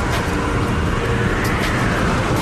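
Swirling wind of a large dust devil: a loud, steady rush of wind with a deep rumble underneath.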